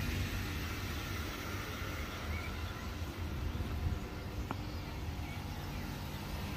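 Steady low running noise of dairy shed milking machinery, with a single faint click about four and a half seconds in.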